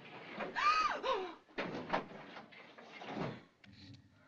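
Metal lattice gate of a lift being slid along its track: a squeal that rises and falls about half a second in, then two rattling slides.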